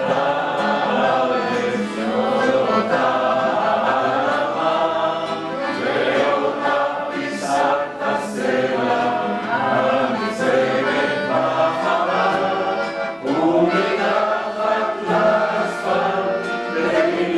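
Several voices singing a Hebrew song together, accompanied by accordion and nylon-string classical guitar, with one man's voice leading at the microphone.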